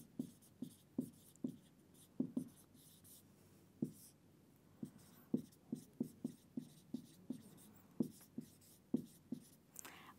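Marker writing on a whiteboard: a faint run of short, irregular squeaks and taps, one with each pen stroke, with a pause of about a second and a half near the middle.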